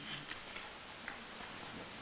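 A pause between speech filled by a steady low hiss of studio room tone, with a few faint ticks early on.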